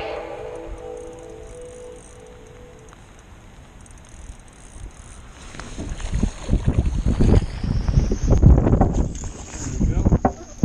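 Background music fading out over the first couple of seconds. Then, from about halfway, irregular knocks, bumps and handling noise as a landing net is worked over the side of an aluminium boat, growing louder toward the end.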